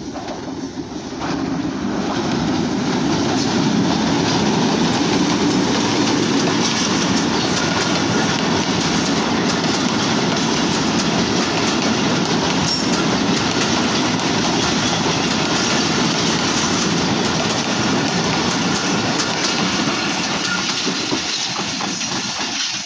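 Diesel-hauled passenger train passing close by over a girder bridge, wheels clattering over the rail joints. The sound builds over the first couple of seconds as the locomotive arrives, then stays loud and steady as the coaches roll past, easing slightly near the end.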